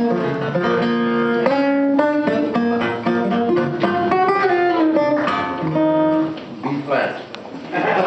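Archtop guitar playing a melody of held notes and chords, breaking off about six and a half seconds in.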